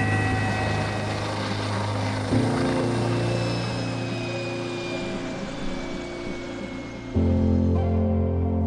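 Background music of sustained low chords, changing about two seconds in and again near the end, laid over an air ambulance helicopter's rotor and turbine sound. A thin whine falls slowly in pitch through the middle.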